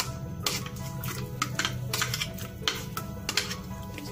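A metal utensil clicking and scraping against a plate, a dozen or so irregular sharp clicks, as chopped vegetables are pushed off it into a pot. Background music plays throughout.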